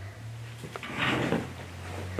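Tensoplast elastic adhesive tape being peeled off and stretched along a foot: a click a little before a second in, then a short rasping peel lasting about half a second, over a steady low hum.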